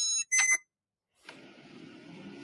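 Electronic keypad door lock beeping as it unlocks after its code is entered: two short electronic tones in the first half second. A faint rustle of the handle being turned follows.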